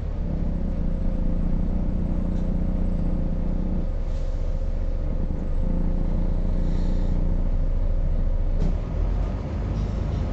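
Bus engine and cabin noise heard from inside the moving bus: a steady low drone whose engine note drops away about four seconds in and comes back, a little louder, a second and a half later, with a few faint rattles.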